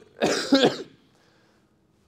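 A man's short, breathy laugh with two quick pulses, lasting under a second, then room quiet.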